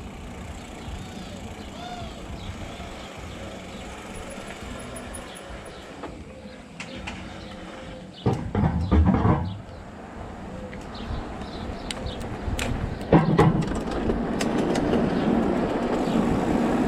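Tyre roll and wind noise from a Specialized Turbo Levo electric mountain bike riding over paved streets, with louder bursts about eight and thirteen seconds in. Near the end it gets louder, with rattling and clicks as the bike rolls onto cobblestones.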